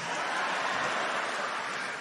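Audience applause after a punchline, a steady wash of clapping that fades as the comedian starts speaking again.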